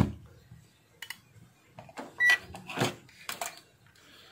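A digital multimeter gives one short, high beep a little over two seconds in, among several soft clicks and knocks from its buttons being pressed and the test leads being handled.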